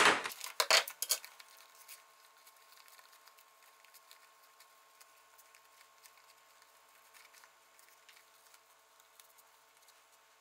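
Embroidery hoop snapped open and its frame set down, a few sharp plastic clacks in the first second. After that comes faint rustling and tearing as the stabilizer is pulled away from the embroidered fabric.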